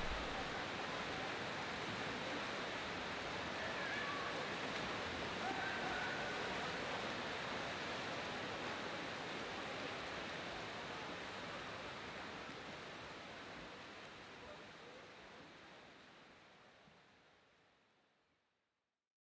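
Indoor swimming pool ambience: a steady wash of splashing with faint distant voices, fading out gradually over the second half.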